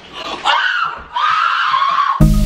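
Women screaming in shock: two long, high screams, the second starting just past a second in.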